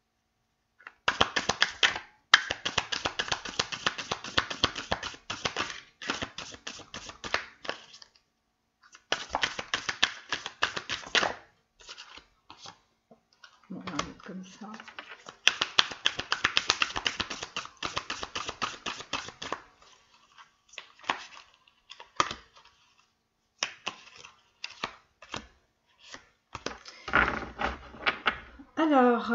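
A deck of oracle cards being shuffled by hand: bouts of rapid card clicks, the longest running for several seconds, with gaps between them, followed by scattered single clicks as cards are dealt onto the table.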